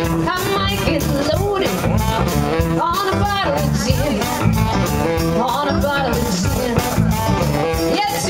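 Live blues-rock band playing: electric guitar, keyboard and drums with a woman singing into the microphone and a saxophone.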